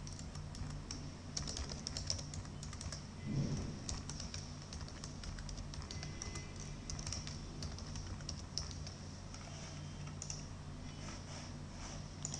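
Computer keyboard typing in irregular runs of keystrokes, with a low steady hum underneath.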